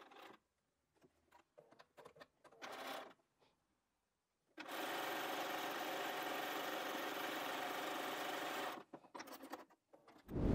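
Electric sewing machine stitching a seam to join fabric strips, running steadily for about four seconds in the middle, after a few seconds of fabric being handled and shifted. A few light clicks follow as it stops.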